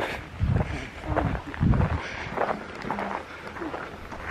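Footsteps on a dirt forest trail with rustling from a handheld camera, as a hiker walks uphill. A few short, faint voice sounds come through.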